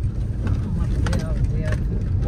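Steady low rumble of a car's engine and tyres heard from inside the moving car's cabin, with faint voices about a second in.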